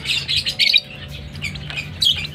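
Lovebird chirping in a quick run of short, high chirps during the first second, with a few more near the end.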